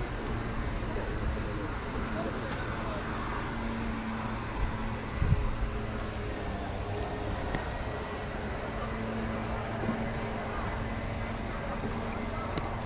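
Outdoor ambience: a low rumble with a faint steady hum and indistinct voices in the background, and one short thump about five seconds in.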